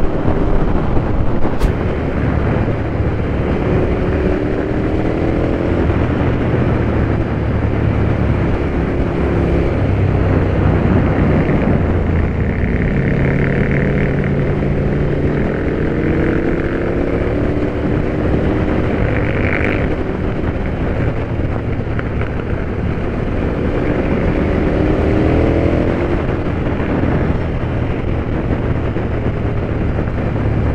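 Ducati Scrambler's air-cooled L-twin engine under way, its pitch climbing as the bike accelerates three times, over steady wind rush on the microphone.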